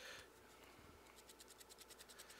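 Faint, quick, evenly repeated scratching of a small paintbrush swiped back and forth over a primed foam claw, dry brushing paint onto its surface.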